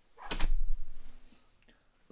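A white-framed casement window being moved, a brief creaking, rubbing noise of under a second that fades away.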